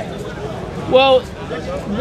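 Speech only: a single drawn-out "Well," about a second in, over faint background noise.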